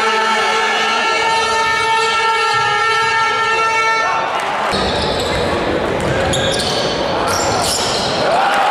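Live basketball game in a large arena hall: a steady horn-like tone sounds for about the first four seconds, then stops. After that comes crowd noise with ball bounces and short high squeaks on the court.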